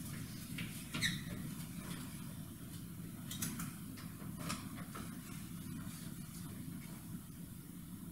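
Quiet theatre room tone: a steady low hum, with a few soft knocks and rustles of actors moving on the stage, the clearest about a second in and others around the middle.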